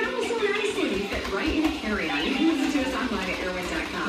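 Indistinct talking with some music behind it, like a television playing in the room.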